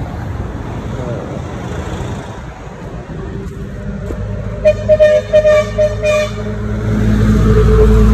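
Road traffic: a vehicle horn gives a quick series of short toots about halfway through, then a heavy engine rumbles louder as a vehicle goes by near the end.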